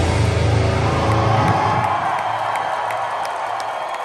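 Live hard-rock band's last chord ringing out and fading, the bass and drums dropping away a little under two seconds in, as the crowd cheers.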